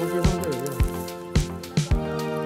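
Background music with a steady beat, about two beats a second, over held tones.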